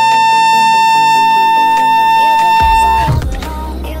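Music: one long, steady high note is held over lower accompanying notes that move in steps, and it breaks off about three seconds in. After it, a man's voice comes in over a deep bass line.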